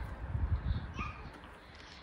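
Low rumble, like wind on the microphone, with a couple of faint knocks as the small door of an outdoor-kitchen mini refrigerator is swung shut.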